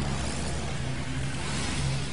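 Car noise: a steady low engine hum under road and traffic noise, swelling slightly about halfway through.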